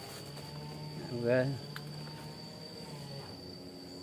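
A steady high-pitched insect drone, like crickets, with a low steady hum beneath it. A brief spoken word comes about a second in.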